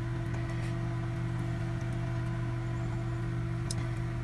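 A steady low mechanical hum from a running motor or appliance, with one light click near the end.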